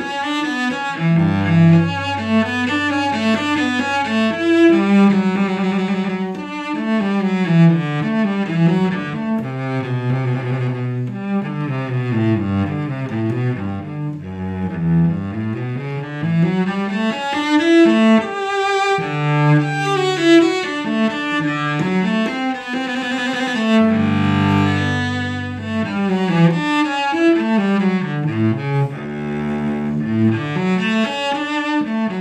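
Solo cello played unaccompanied with the bow: quick running passages that climb and fall, broken now and then by long-held low notes.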